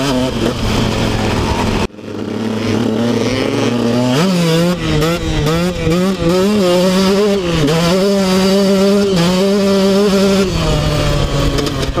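KTM 125 SX two-stroke single-cylinder engine heard from on board while riding. It holds steady revs at first and cuts out for a moment about two seconds in. About four seconds in the revs climb, and they rise and fall with the throttle until they settle lower near the end.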